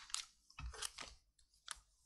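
Faint rustling and clicking of papers handled at a desk microphone, in a few short, separate bursts.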